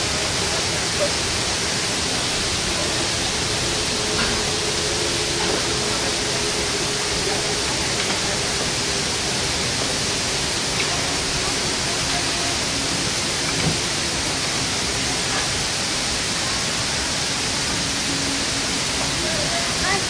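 A steady, even rushing noise at a constant level, with faint voices in the background.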